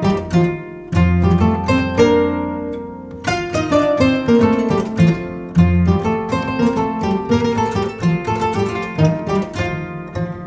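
Two koras playing an instrumental duet: quick plucked runs over ringing bass notes. About a second in, a low note is held and the notes thin out and ring away, and the quick runs pick up again a little past the third second.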